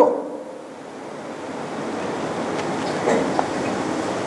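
A steady rushing noise, like wind or air, that slowly grows louder over the first seconds, with a faint brief sound about three seconds in.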